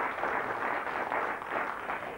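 Studio audience applauding steadily, easing off slightly near the end.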